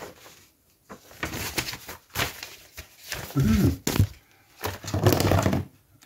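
Small modelling items clattering and knocking against the desk as they are knocked over, with two sharp knocks. A short grunt and a low murmur come in between.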